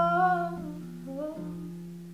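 Acoustic guitar chord ringing and slowly fading while a woman's voice holds a wordless, hummed note, then adds a short second phrase just past a second in.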